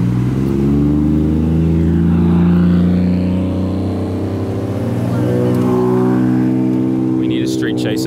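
Lowered Toyota Chaser sedan driving slowly past at low revs, its engine and exhaust giving a loud, deep, steady drone that is loudest about two seconds in and eases a little as the car moves away.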